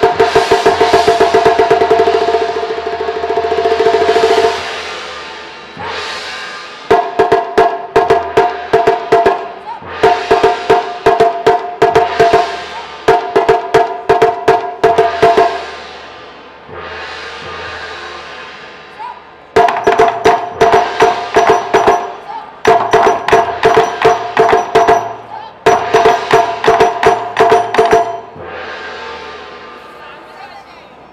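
Chinese drum ensemble playing large barrel drums and a set of small drums. A long fast run of strikes comes first, then short bursts of rapid beats with brief pauses between them. The last burst dies away about two seconds before the end.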